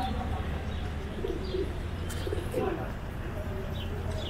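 Pigeons cooing in short low calls, with a few small high bird chirps over a steady low background rumble.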